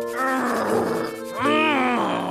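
Two wordless, annoyed vocal groans from a cartoon character, the second rising and then falling in pitch, over background music.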